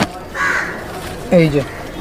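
One short harsh bird call about half a second in, followed by a man saying a couple of words.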